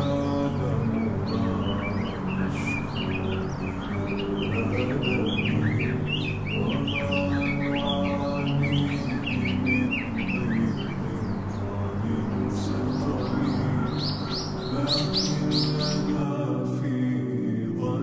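Birds chirping over background music of long sustained tones, with the chirps densest and highest a few seconds before the end.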